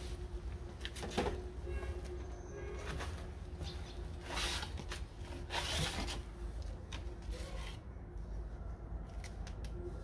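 Live Asian swamp eels writhing and slithering in a plastic basin with a little water, stirred by a hand: scattered wet clicks and squelches, with two longer wet rustles around four and a half and six seconds in. A faint steady hum runs underneath.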